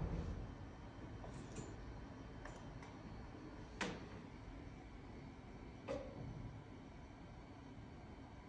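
Braun Skin i·Expert IPL 7 handset firing a test flash: one sharp click about four seconds in, then a fainter click about two seconds later, over quiet room tone.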